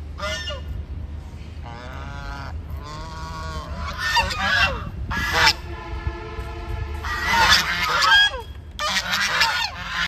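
A flock of domestic Chinese geese honking in a series of separate calls, several birds overlapping, the calls growing louder and more crowded in the last few seconds.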